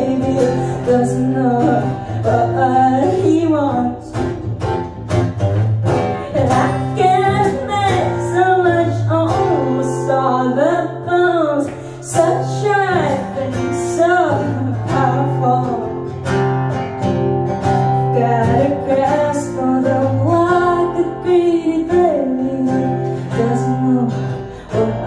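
A woman singing with her own strummed acoustic guitar in a live solo performance.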